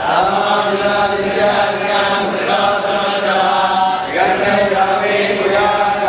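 Hindu priests chanting a hymn together in a steady, sustained recitation, with a short break for a new phrase about four seconds in.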